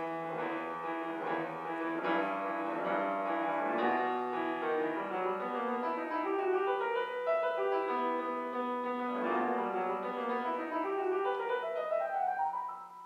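Solo grand piano played continuously, a steady flow of melody over chords with no pauses.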